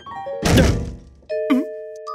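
Cartoon sound effects: a heavy thud about half a second in, followed by sustained musical notes with a quick wobbling pitch sound over them.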